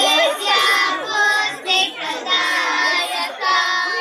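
A group of children singing a Ganesh devotional hymn together in short phrases with brief breaks between them.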